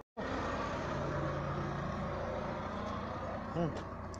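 Steady engine hum and noise from a running motor vehicle, beginning abruptly just after the start, with a short voice call near the end.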